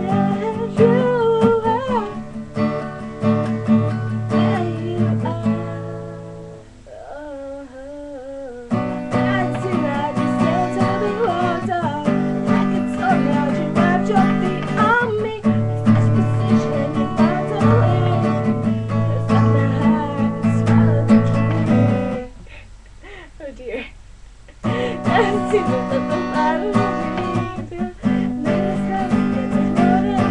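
Strummed acoustic guitar with a young woman singing over it. The guitar stops for a couple of seconds about seven seconds in, leaving the voice alone, and the music dips quiet again for a couple of seconds later on.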